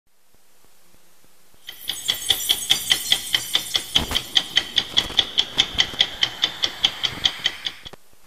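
A ticking clock, sharp even ticks about five a second with a slight metallic ring, starting about two seconds in and stopping just before the end.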